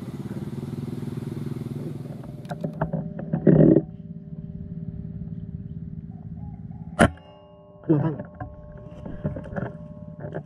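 A single sharp air-rifle shot about seven seconds in, over a motor humming steadily in the background.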